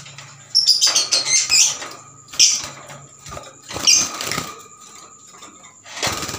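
Young lovebird giving short, shrill squawks in three bursts as it is caught and taken in hand, with handling rustle; it is quieter near the end.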